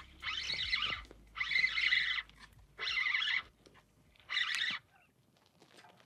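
Spinning reel being cranked in four short bursts, each under a second, with pauses between, as a jig is worked back on the line.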